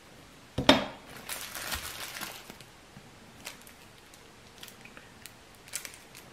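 Small items from a survival kit being handled on a table: one sharp clack about a second in, then about a second of crinkling packaging, then a few faint clicks as the pieces are turned over.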